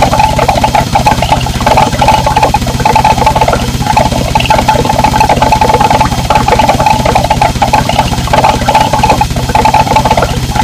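Harsh noise music: a loud, dense wall of distorted noise over a fast, even low pulse, with a bright buzzing band that keeps cutting in and out.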